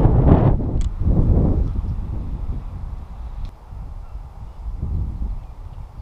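Wind buffeting the microphone: a low rumble in gusts, heaviest in the first second and a half and easing off after.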